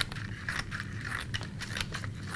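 Scissors snipping a quick run of short cuts into a strip of poster board, cutting a fringe.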